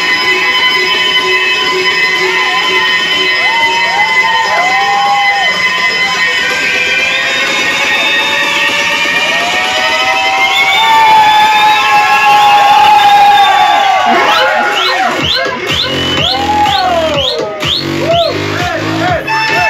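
Electric violin played with sliding, bending notes over an electronic dance backing track, with a crowd cheering and shouting along. A heavy bass beat comes in near the end.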